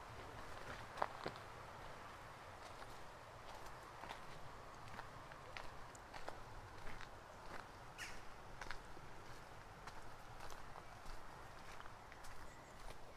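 Faint footsteps of a person walking on a dirt and gravel path, over a steady faint rush of flowing river water.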